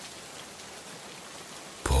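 Steady rain falling, heard as an even hiss. A man's voice cuts in right at the end.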